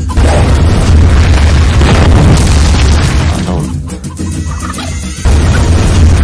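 Loud cinematic trailer music with heavy booming bass hits and crashing impact effects. The sound thins briefly near four seconds, then comes back with a sudden hit about five seconds in.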